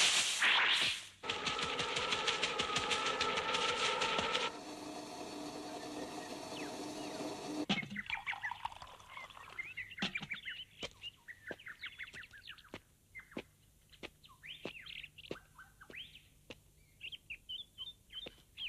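Birds taking off from a branch: a sudden loud burst of flapping wings, then a few seconds of rapid fluttering. After that come short scattered chirps and twitters, fainter, through the second half.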